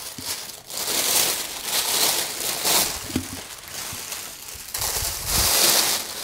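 Thin paper wrapping crinkling and rustling as a jersey is unfolded and lifted out of it, in several bursts, loudest about five seconds in, with a few low bumps.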